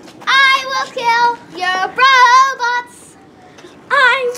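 A girl singing unaccompanied in a few short, high phrases, breaking off about three seconds in.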